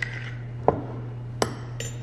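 Metal measuring spoon scooping brown sugar from a glass jar and knocking it into a bowl: a soft knock, then two sharp clinks with a brief high ring in the second half. A low steady hum runs underneath.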